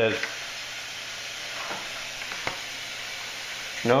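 Light rubbing and handling noise of hands turning a small plastic camera over, against a steady hiss, with one small click about two and a half seconds in.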